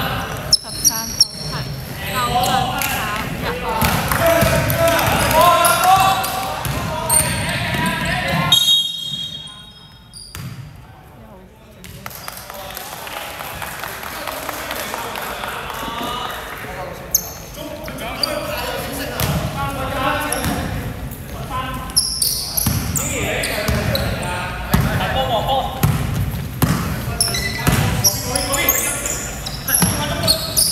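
Basketball game in an echoing sports hall: the ball bouncing on a wooden court amid players' shouts and calls, with a quieter lull about a third of the way in.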